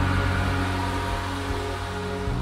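Background music holding a sustained chord over a low bass note.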